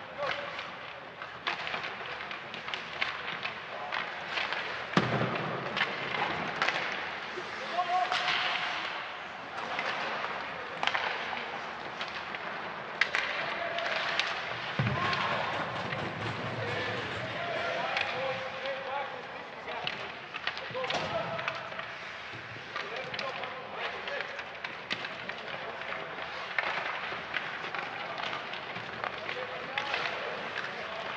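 Live rink sound of an ice hockey game: skates scraping and sticks and puck clacking in quick, irregular knocks, with voices calling out. There are two heavier thuds, about five seconds in and about fifteen seconds in.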